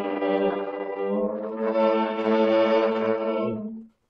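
Harmonica ensemble from a 1936 record playing sustained chords. The music breaks off into silence near the end.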